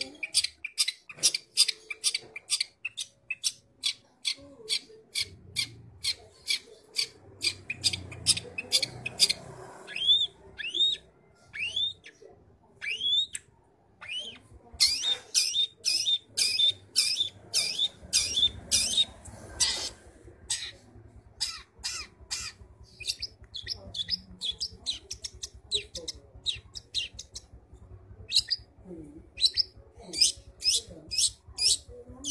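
Caged long-tailed shrike (cendet) calling busily in full voice: a long run of short, harsh high notes at about three a second. About ten seconds in, a few rising whistled notes break the run.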